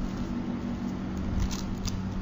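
Pages of a Bible being turned: faint paper rustling with a couple of soft knocks in the second half, over a steady low hum.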